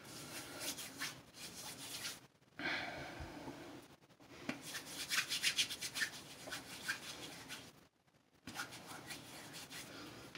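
Palms rubbing together to work hair styling product between the hands: faint, quick rubbing strokes in short spells with a few brief pauses.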